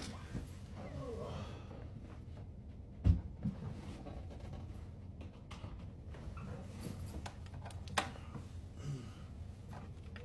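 Handling noise as someone shifts about and fiddles with a light, with a loud thump about three seconds in and a sharp click near eight seconds, over a steady low hum.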